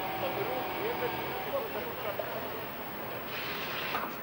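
Outdoor background of steady distant traffic noise with a faint hum and faint distant voices; the hiss grows a little near the end.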